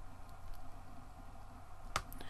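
Faint stylus-on-tablet writing sounds over a low steady electrical hum, with one sharp click near the end.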